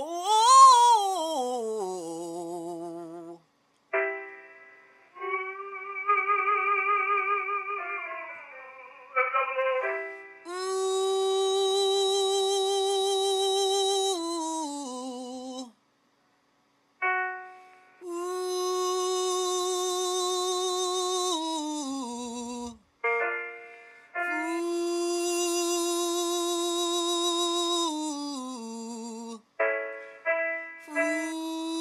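A male singer's voice singing vocal exercises into a studio microphone. It opens with a quick slide up and back down, then moves through a series of long held notes with vibrato, each a few seconds long and ending in a falling drop in pitch.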